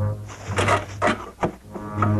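Dramatic orchestral underscore with sustained low bowed strings, and a few short noisy sounds laid over it through the middle.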